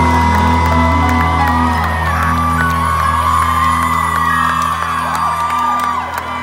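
Live pop band holding a sustained chord over a steady low bass as a song ends, while an arena crowd cheers and whoops.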